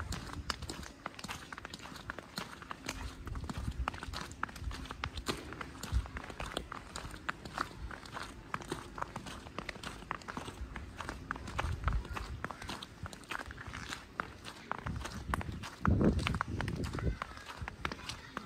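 Footsteps of a person walking along a snow-covered village street, a steady run of short steps. About two seconds before the end there is a louder low rumble.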